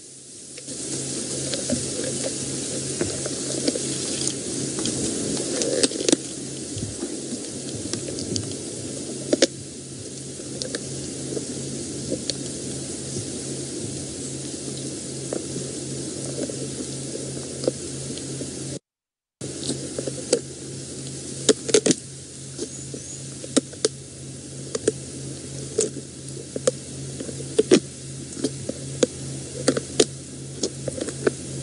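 A lioness crunching through the shell of a small leopard tortoise with her canines and incisors: irregular sharp cracks and crunches over a steady hiss.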